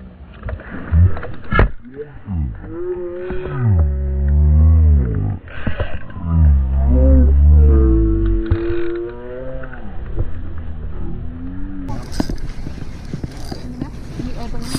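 A series of long, drawn-out vocal cries, about four of them, each bending up and down in pitch, very loud and deep. A couple of sharp knocks come about a second before them.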